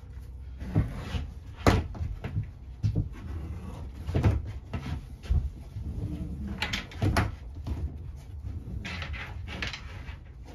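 Handling noise of thick loose-tube fiber optic cables being moved on a workbench: irregular knocks and scrapes, a sharp knock a couple of seconds in and a cluster of them near the end.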